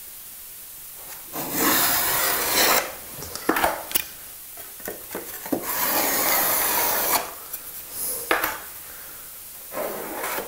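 Metal filling knife scraping along a mitred coving corner joint, working off excess adhesive. There are two long scrapes of about a second and a half each, with a few light taps and clicks between them.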